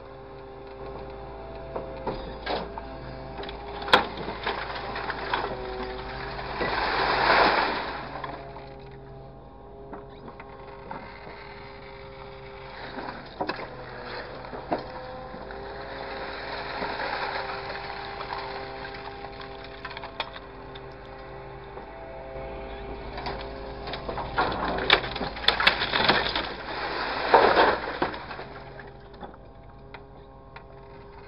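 Grapple truck's engine and hydraulics running, a steady hum of several tones whose pitch shifts as the boom moves. Three noisy surges, the last and loudest near the end, and several sharp knocks as the grapple bites into and drops a pile of loose material.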